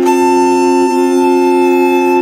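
Slow instrumental music: a violin holds one long high note over a steady low drone, giving a bagpipe-like sound.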